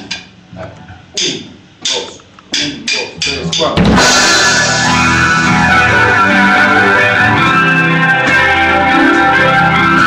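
A rock band starts a song: a few sharp hits that come faster and faster, then about four seconds in distorted electric guitar and a drum kit come in together and play on loudly and steadily.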